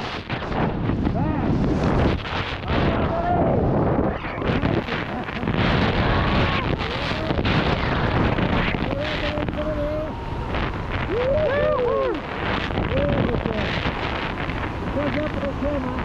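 Wind rushing over the camera microphone during a tandem parachute descent under an open canopy, a steady loud rush. A voice gives a few short calls around the middle and again near the end.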